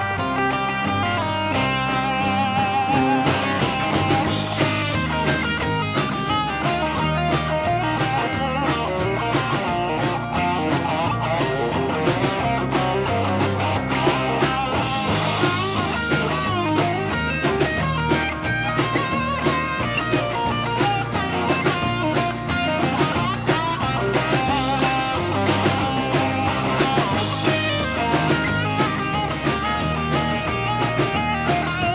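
Live rock band playing an instrumental passage: an electric guitar lead on a Gibson Les Paul over bass guitar and a steady drum beat.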